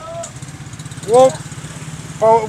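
A small vehicle engine idling steadily with a fast, even putter.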